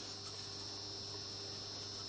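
Steady low electrical hum with a faint high whine over quiet workshop room tone.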